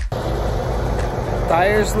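Semi truck's diesel engine idling with a steady low rumble; a man starts talking near the end.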